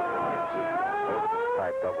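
A siren wailing with a slowly sliding pitch, sagging and then rising again, under a man's commentary.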